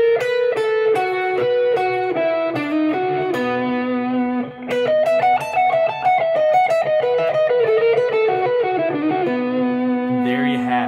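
Telecaster-style electric guitar playing a steady run of single picked notes, a bluegrass-style line worked through slowly and evenly, with a few notes held longer.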